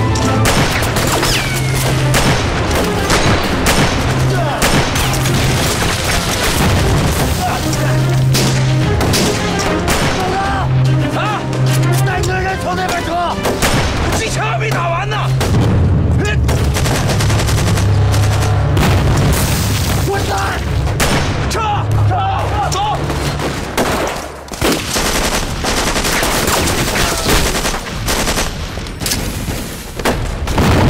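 Film battle soundtrack: bursts of rifle and machine-gun fire and booming explosions over a music score with a low, blocky bass line, with men shouting now and then.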